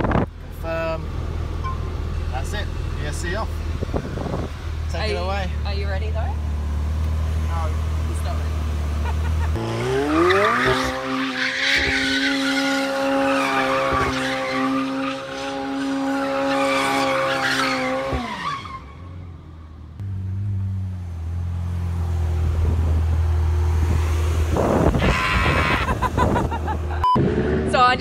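McLaren 720S twin-turbo V8 idling, then revving up about ten seconds in and holding high revs for about eight seconds while the rear tyres squeal through donuts. The revs then drop away and the engine settles back to a low idle.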